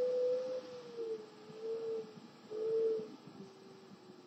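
Power wheelchair drive motors whining in three short spurts, each a thin, slightly wavering tone, as the chair is nudged with its joystick. The spurts are followed by fainter, lower blips.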